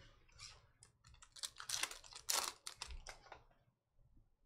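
Hands handling a pack of basketball trading cards: a quick run of dry clicks and rustles from cards and wrapper, busiest in the middle.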